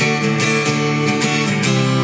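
Acoustic guitar strummed in chords at a steady rhythm, a short instrumental stretch between sung lines.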